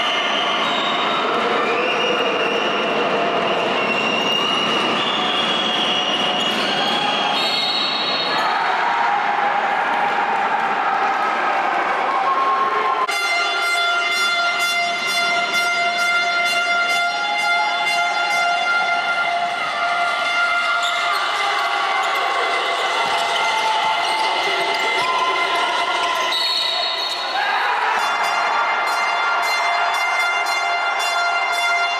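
Live audio from a basketball game's final minute: a ball bouncing on the hardwood court under a steady crowd din. Sustained horn-like tones step up and down in pitch, and a fuller set of them cuts in abruptly about halfway through.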